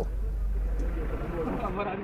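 Steady vehicle noise with indistinct voices talking in the background, the voices becoming a little clearer about a second in.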